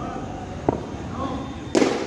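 A short sharp knock about two-thirds of a second in, then a louder crack near the end, over faint voices.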